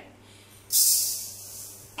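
Granulated sugar poured from a bowl into an empty stainless steel pan: a sudden hiss of grains pattering onto the metal starts just under a second in and fades away over about a second.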